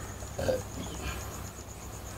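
A brief, low, throaty grunt from a person about half a second in, over a steady low room hum.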